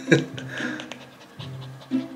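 A cavapoo panting over soft background music of held, stepping notes.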